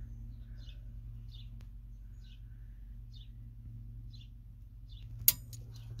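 A well pump pressure switch clicking once, sharply, about five seconds in: its contacts closing as the pressure falls to the cut-in point near 30 psi. A steady low hum runs underneath, and a small bird chirps repeatedly, faint and high.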